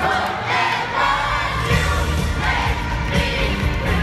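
A pop singer singing live into a microphone over the band's amplified music, with a large arena crowd singing along and cheering. The low bass beat drops back briefly, then comes in strongly about a second in.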